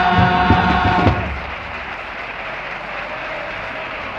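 A comparsa's male chorus with guitars and steady drum beats holds a final sung chord that cuts off about a second in. Audience applause follows.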